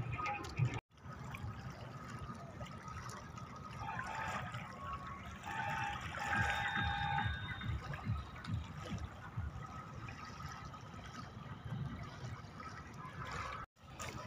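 River water lapping at the bank, with low rumbling underneath and a few short steady tones between about four and seven seconds in. The sound cuts out briefly about a second in and again near the end.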